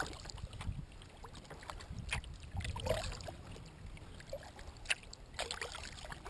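Water sounds around a moving kayak: a few short, irregular splashes and drips, as from paddle strokes, over water lapping at the hull and a low steady rumble.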